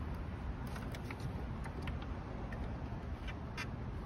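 Faint scattered clicks and taps of gloved hands working a vacuum line loose on top of an engine's intake, over a steady low rumble.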